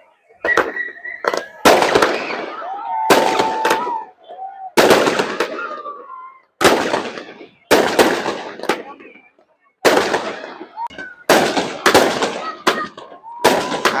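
A fireworks display: a series of loud bangs, roughly one a second and some in quick pairs, as fireworks launch from the ground and burst overhead, each bang trailing off in an echo.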